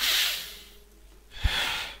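A person breathing heavily close into a headset microphone, twice: a loud breath starting suddenly and fading over about half a second, then a second breath about a second and a half in, with a low pop at its start as the air hits the mic, which leads into a sigh.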